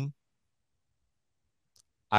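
Near silence in a pause between speech, with one faint, short click near the end.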